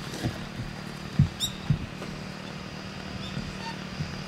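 Outdoor ambience with a steady low hum, a few dull bumps in the first two seconds, and a short high chirp about a second and a half in.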